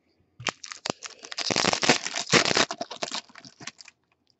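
A foil baseball card pack wrapper being torn open and crinkled by hand: a dense crackle of many small clicks, loudest in the middle and tailing off near the end.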